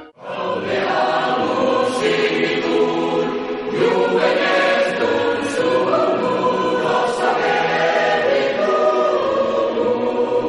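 Choral music: a choir singing held chords, cutting in abruptly after a brief drop right at the start.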